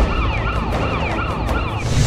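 An emergency-vehicle siren in a fast yelp, its pitch rising and falling about three times a second, over a low rumbling drone.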